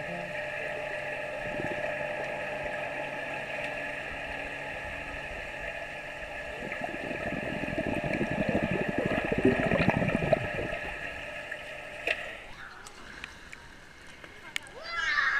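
Muffled underwater sound from a camera held below the surface of a swimming pool: a steady hum, with churning bubbles and splashing from a child kicking, loudest in the middle. A click about twelve seconds in as the camera comes out of the water, and the underwater hum cuts off.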